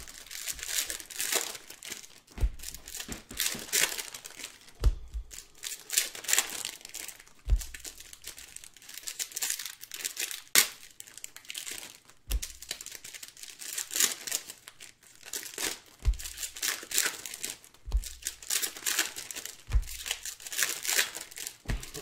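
Trading-card pack wrappers crinkling and rustling as they are handled, in an irregular crackly run, with a soft low thump every few seconds.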